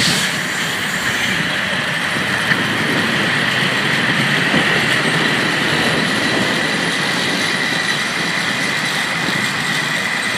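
Steady mechanical rumble with a thin high whine held throughout. A truck's tyres thump over the crossing just at the start.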